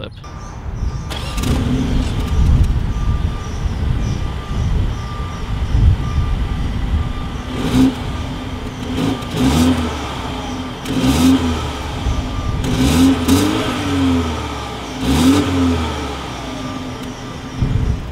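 Exhaust of a 2020 BMW X2 xDrive28i with a 2.0-litre turbocharged four-cylinder engine. It starts up about a second in and idles, then is revved in a series of short blips, each rising and falling, from about eight seconds on.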